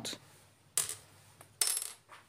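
Two short metallic clinks of small metal parts being set down on a hard worktop, the second about a second after the first and slightly longer, with a brief ring.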